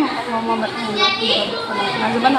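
Speech only: a voice softly reciting a short prayer before a meal.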